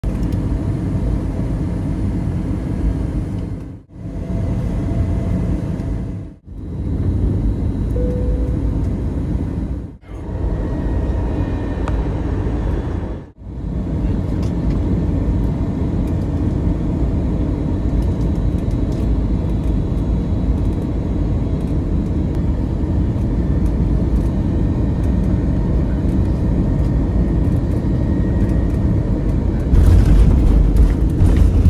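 Jet airliner cabin noise heard from a window seat on final approach: a steady rumble of engines and airflow. It drops out briefly four times in the first half and grows slowly louder through the second half.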